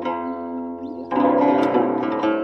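Background music of a plucked zither playing notes that slide and bend in pitch. It is softer for the first second, and a louder phrase comes in about a second in.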